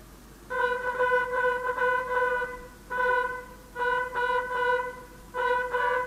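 Brass instruments playing a tune in short phrases of steady, held notes with brief pauses between them.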